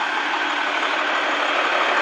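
Diesel engine of a Volkswagen 18.310 Titan truck idling, a steady unbroken hum.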